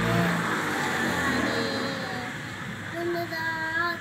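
A passing motor vehicle's noise, loudest in the first second and fading over the next two, under a boy's sing-song recitation. From about three seconds in, the boy's voice sings clear, held notes.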